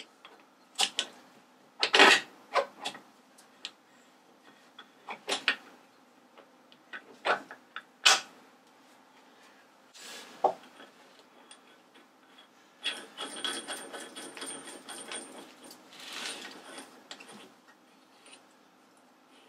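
Metal pulley being worked onto a spindle by hand inside a metal housing: scattered sharp clicks and knocks, then a few seconds of continuous rattling and scraping near the end.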